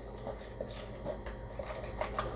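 A utensil stirring a wet mix of mashed sweet potato, melted butter, honey and buttermilk in a metal mixing bowl: faint, irregular scrapes and wet stirring sounds over a low steady hum.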